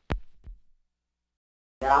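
Two short, soft sounds in the first half second, then a second of dead silence where the audio has been cut; a woman's voice starts again at the very end.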